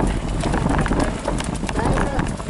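Mountain bike rattling over a rough dirt-and-stone track: a rapid, irregular clatter of small knocks over a low wind rumble on the microphone.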